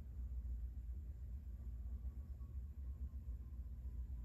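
Low steady background hum, with no distinct sounds: room tone.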